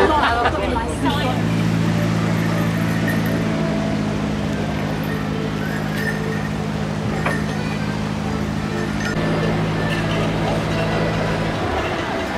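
Narrowboat's diesel engine running steadily at low revs, a low even hum that starts about a second in, with people's voices around it.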